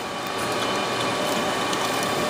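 Hands pulling Molex power connectors and working the wire harness inside a server's power-supply tray: a steady rushing noise with faint clicks and rustles of plastic and cable.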